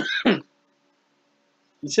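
A man's brief croaky vocal sound, not a word, in two short pulses falling in pitch. Silence follows until he starts speaking again near the end.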